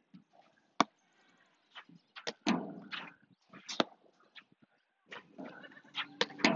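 Platform tennis rally: the ball is struck by solid paddles and bounces on the court, giving a handful of sharp, irregularly spaced pops. The clearest comes about a second in, a close pair follows a little past two seconds, and another comes near four seconds.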